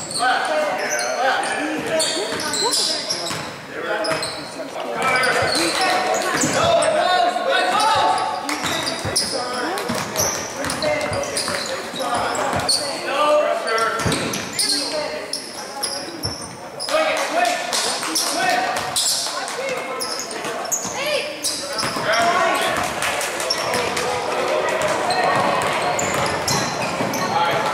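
Basketball game sounds in a gym: a basketball being dribbled on the hardwood floor, with players and spectators calling out, all echoing in the large hall.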